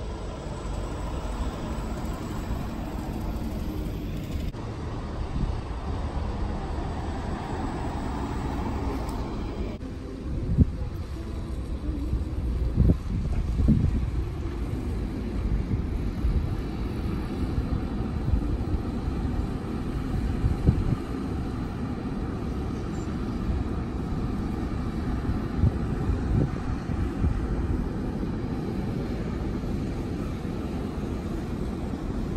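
Street traffic noise around electric city buses moving at low speed, with irregular low thumps of wind on the microphone.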